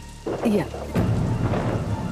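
A thunderclap breaks about a second in and rolls on as a low rumble, over steady rain.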